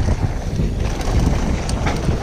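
Wind buffeting the microphone of a GoPro Hero5 Black as a Giant Reign 1 full-suspension mountain bike descends a dirt and gravel trail, with the tyres running over the loose surface. A few sharp clicks and rattles from the bike come near the end.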